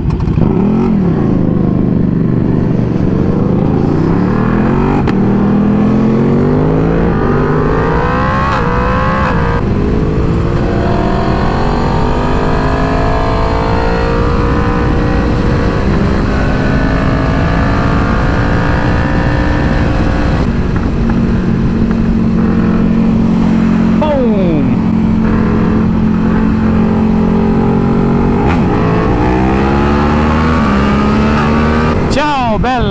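Sport motorcycles pulling away from a stop and accelerating through the gears, the engine pitch climbing and dropping with each shift, then cruising at a steady pitch for the last ten seconds or so.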